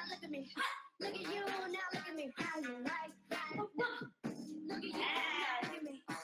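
Voices over pop music, heard through a video-call connection.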